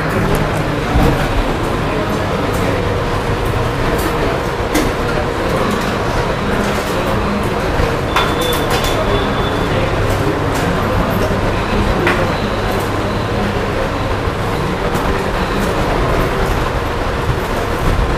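Steady classroom background noise: an even hiss and hum with a few faint clicks scattered through it.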